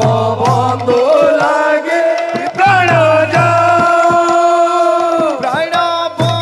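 Odia devotional kirtan: a man sings a chant-like line into a microphone with long held notes, over a steady beat of low drum strokes and the jingling clatter of wooden clappers fitted with metal jingles.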